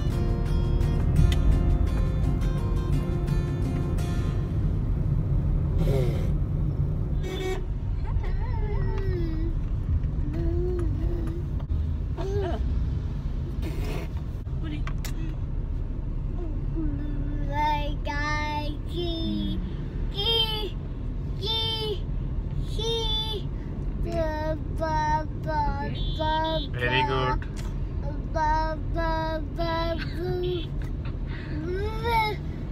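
Steady low rumble of a moving car, heard from inside the cabin. Background music plays for the first few seconds, then a voice takes over in short, repeated sing-song phrases.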